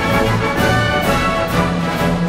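Orchestral music: a symphony orchestra playing, with strings and brass over held low notes that change every half second or so.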